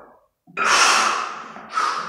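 Heavy, forceful breathing of a lifter working two heavy kettlebells: a loud sharp gasp about half a second in that fades away over a second, then a shorter breath near the end.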